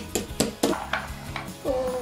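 Several light clicks and knocks of plastic Playmobil toy pieces being handled and set down on a tabletop, over background music.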